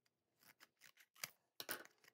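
A few faint crinkles and clicks of a paperboard retail package being handled and opened, the loudest about a second and a half in.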